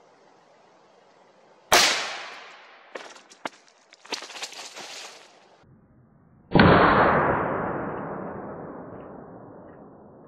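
A 6.5 PRC rifle shot about two seconds in, its report dying away over a second or so, followed by a few clicks and a short hiss. About six and a half seconds in comes a second, duller and longer report that fades slowly away.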